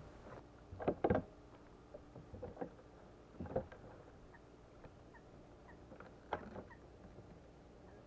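Faint, scattered knocks and clicks from handling gear in a fishing kayak while a fish is played on the line: a pair about a second in, more around two and a half and three and a half seconds, and one near six seconds.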